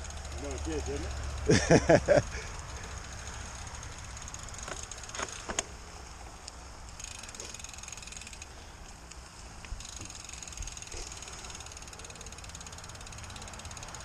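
Canyon Grail gravel bike rolling along a leaf-covered dirt trail, giving a steady low rolling noise from tyres and bike, heard through a handlebar-mounted camera's microphone. Short bursts of voice come about a second and a half in.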